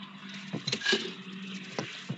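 Computer keyboard keys clicking a few times over a steady rustling hiss.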